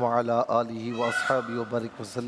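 A man's voice reciting in a drawn-out, chanted style, with long held and wavering notes: the opening invocation of a religious talk.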